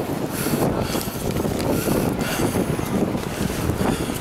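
Blizzard wind buffeting the microphone: a continuous rough rumble with hiss that rises and falls in gusts.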